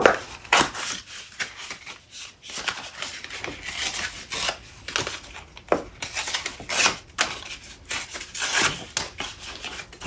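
Stiff black paper being folded, flexed and handled, with irregular rustles and short crisp snaps and taps.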